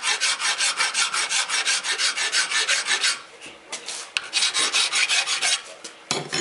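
Hand file scraping rapid back-and-forth strokes across the flat flange of a metal thermostat cover, truing its seating face so the gasket will seal without leaking. The strokes pause about three seconds in, then resume for a second run.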